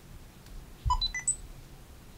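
Fujifilm FinePix S4200 camera powering on: its start-up sound is a quick run of short electronic beeps at different pitches, about a second in, with a soft low thump at the start.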